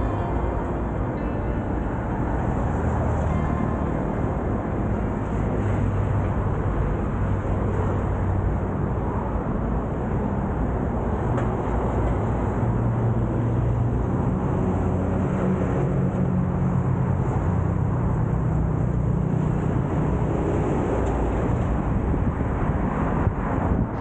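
Steady noise of car traffic passing close by, with a low droning undertone. Faint music fades out in the first few seconds.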